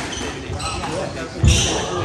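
Squash ball strikes during a rally, ball on racket and court walls, under spectator chatter. A loud shout of "yeah" with laughter comes about one and a half seconds in.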